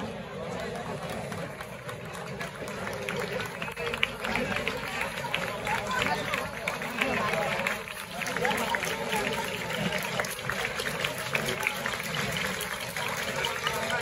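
Outdoor crowd of spectators talking, with many scattered small clicks and taps running through the murmur.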